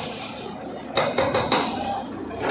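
Brick and concrete rubble clattering and knocking as a backhoe's bucket breaks into a house wall, with a quick run of sharp knocks about a second in.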